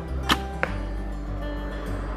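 Traditional bow shot: a sharp snap of the string on release, followed about a third of a second later by a fainter knock, over background music.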